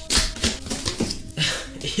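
Cardboard box being opened by hand: a few short rustles and scrapes as the lid and flaps are lifted and pulled apart.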